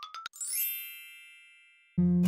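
Logo-reveal sound effect: the last few notes of a quick rising run of short notes, then a bright, shimmering chime that rings out and fades over about a second and a half.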